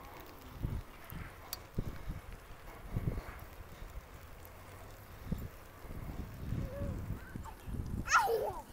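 Wind buffeting the microphone of a camera carried on a moving bicycle, in irregular low gusts, with faint rattles from the ride.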